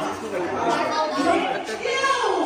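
Chatter of a group of young people talking over one another, no single voice clear.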